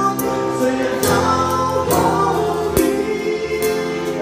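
Drum kit played along to a recorded pop song with singing: stick strokes on drums and cymbals over the backing track, with a few sharp accented hits.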